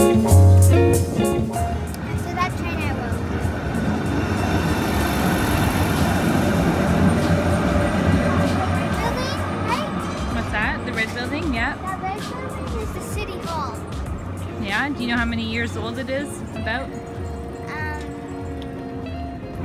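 City street noise, with a tram rolling past on its tracks, swelling and then fading over several seconds, and voices of people nearby. A few notes of acoustic guitar music play at the very start.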